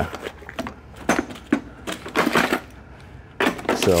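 Hand tools clattering and clinking in a metal toolbox as a gloved hand rummages through them: a series of irregular clanks and rattles, busiest near the end.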